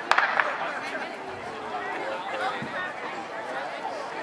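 A single sharp bang right at the start, the starting gun for a 200 m sprint, over steady chatter from spectators in the stands.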